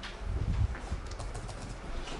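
Several light keystrokes on a laptop keyboard, the Return key pressed a few times, with a low thump about half a second in.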